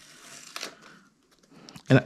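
Faint crinkling of painter's tape and a plastic stencil being peeled up and lifted off a card, dying away about halfway through, with a couple of small clicks just before a voice comes in.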